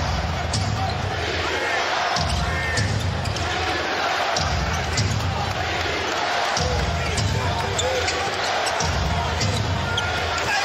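Basketball being dribbled on a hardwood arena court: short sharp bounces over steady crowd noise. Underneath runs a low pulse that comes in blocks about two seconds long with short breaks.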